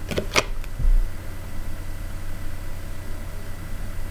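A few quick snaps and clicks of tarot cards being handled in the first half second, then a steady low hum with a soft hiss.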